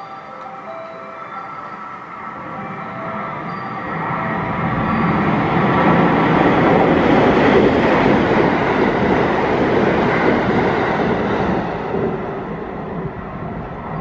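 A JR West 223 series and JR Shikoku 5000 series electric multiple unit running as a rapid train passes straight through the station at speed. Its rushing rail noise builds from a few seconds in, is loudest in the middle as the cars go by, and fades away toward the end.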